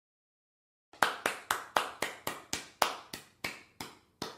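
A quick run of about a dozen sharp hits, roughly four a second, each with a short echoing tail, starting about a second in.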